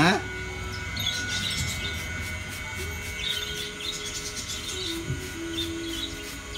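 Small birds chirping in short bursts, with a faint steady hum underneath.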